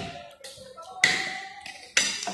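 Metal spoon striking a plate: a sharp clink about a second in that rings and fades, and another just at the end.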